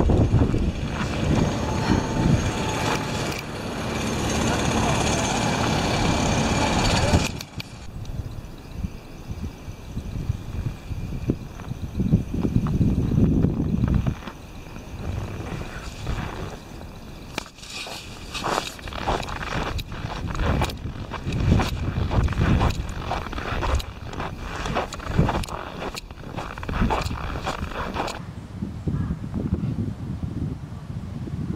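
Footsteps crunching in deep snow, about one or two steps a second. For the first seven or so seconds a steady rushing noise, like wind on the microphone, runs under them and then stops abruptly.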